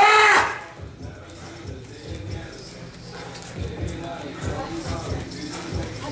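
A loud, short shouted call with a rising-then-falling pitch right at the start, then faint background talk and soft low thumps.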